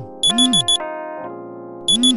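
Phone alarm beeping in two quick groups of four high beeps, each group with a low rising-and-falling tone. Soft piano music plays underneath.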